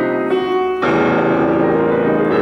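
Steinway grand piano playing contemporary classical music, notes ringing on. A loud new chord is struck about 0.8 seconds in.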